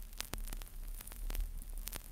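Vinyl LP surface noise in the silent groove between two tracks: steady hiss and a low rumble, broken by a scatter of sharp clicks and pops as the stylus tracks the groove.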